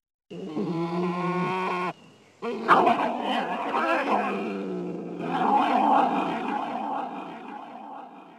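Growling, roaring animal-like voice calls. One pitched growl lasts about a second and a half. After a brief break, a louder, rougher stretch of growls and roars swells twice and fades toward the end.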